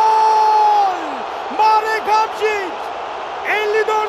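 Football TV commentator's long drawn-out "goool" shout, held on one pitch and falling away about a second in, followed by short excited shouts over stadium crowd noise.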